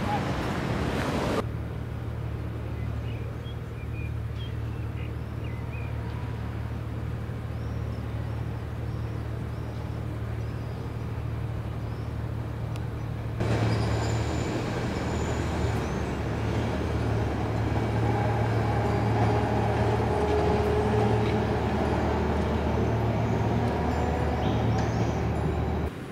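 City street ambience: a steady low rumble of road traffic, which drops abruptly about a second and a half in and grows louder again about thirteen seconds in, with faint whining tones from passing vehicles in the last part.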